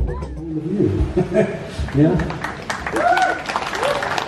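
A seated audience clapping, with voices calling out and cheering over the applause.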